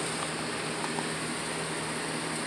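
Steady mechanical hum with a low tone under an even hiss, typical of a ventilation fan or air-conditioning unit running.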